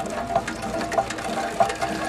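Water from a borehole hand pump pouring and splashing into a plastic jerrycan, with repeated short knocks every half second or so.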